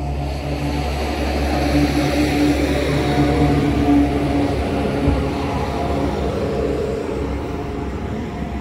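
A motor engine running with a steady low drone and a pitched hum that swells in the middle and then eases off.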